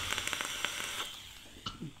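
Vape coil crackling and sizzling as it fires during a draw, thinning out and dying away after about a second.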